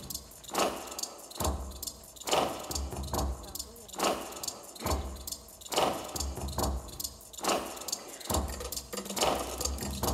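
Rhythmic dance-performance soundtrack of metallic jangling and clinking over a low bass pulse. It swells in a regular cycle about every second and three-quarters.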